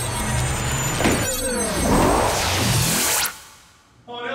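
A musical transition sting with whooshing sweeps that glide up and down, ending in a rising sweep and dying away near the end.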